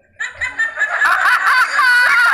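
Women laughing, starting after a brief pause about a quarter second in and building into continuous laughter from several overlapping voices.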